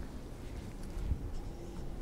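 Quiet room tone: a low rumble with faint rustling and small handling noises.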